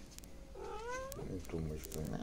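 A domestic cat meows once, about half a second in, its pitch rising and then falling.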